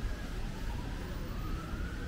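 An emergency vehicle's siren wailing, one slow rise in pitch, over a steady low rumble of street noise.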